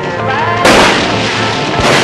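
Two sharp bangs over music. The first and loudest comes a little over half a second in and dies away quickly; the second comes near the end.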